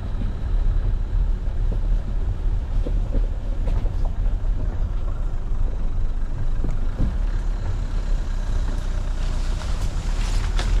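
Dacia Duster driving slowly over a rough, rutted dirt lane: a steady low rumble of engine and tyres, with scattered short knocks from the suspension and body. Near the end comes a swishing of foliage brushing along the car's side.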